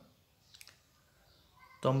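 Near silence between a man's phrases, broken by a couple of faint clicks about half a second in; he starts speaking again near the end.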